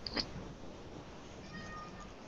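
A small child's faint, high-pitched meow-like cry, coming over a video call, so cat-like that it is taken for a cat.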